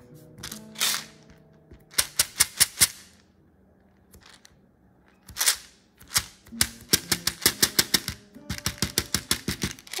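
Quick runs of sharp taps on a glass tabletop as a lump of clay is patted flat by hand. There is a short burst about two seconds in, a pause, then a faster run of about five taps a second through the second half.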